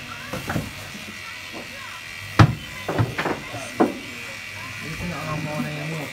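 Electric hair clippers buzzing steadily while cutting a child's hair, with several short, loud vocal outbursts about halfway through.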